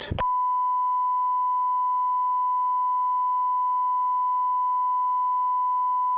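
Broadcast line-up test tone: a single steady pure tone, held unbroken after the brief end of a recorded voice announcement. It is the programme signal that fills the feed while the committee is suspended.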